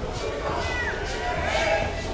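Voices of people on the street talking indistinctly, with one short high-pitched rising-and-falling call a little before the middle.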